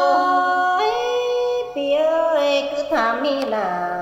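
Tai khắp folk singing: a voice holding long, ornamented notes that slide to a new pitch about a second in and again near two seconds, then moving on in shorter, quicker phrases in the last second.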